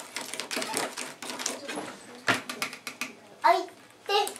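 Quick scraping and clicking of a small stirrer against a plastic candy-kit tray as foaming powder is mixed into water, with one louder knock a little past halfway.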